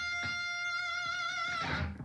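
Electric guitar with a single picked note ringing steadily for about a second and a half, then fading. It is played as the contrast to a chiming note picked in the proper spot, and the player dismisses its tone with 'Kill Me Please.'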